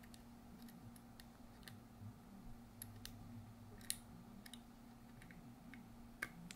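Near silence broken by faint, scattered small clicks and ticks from fingers working the SIM-style memory card holder in the back of a Uniden SDS100 handheld scanner, the sharpest click about four seconds in.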